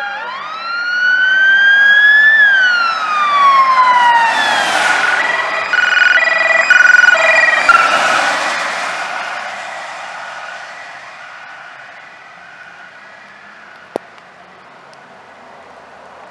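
Siren of a Miami County Sheriff's Dodge Durango passing at speed. It wails up and down, then switches to a choppy alternating tone that is loudest as the SUV goes by, and fades into the distance.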